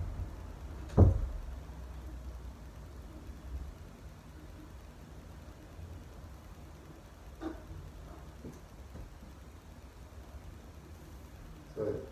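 Steady low rumble of room tone, with a single sharp dull thump about a second in and a faint tick later.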